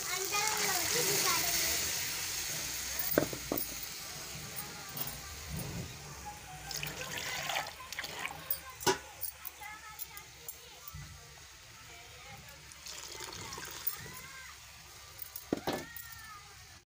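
Green pea paste poured from a steel mixer jar into a hot kadhai of fried onion-tomato masala, with a hiss that is loudest at first and fades; then water poured into the steel jar to rinse out the leftover paste, with scattered clinks of steel utensils.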